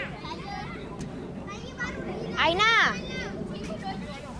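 Children's voices calling out across an open playing field during a game, with one loud, high-pitched shout about two and a half seconds in whose pitch rises and then falls, over a steady low background noise.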